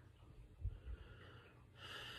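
A person's breathing while smoking a cigarette: two soft low thumps, then a breathy rush of air starting near the end.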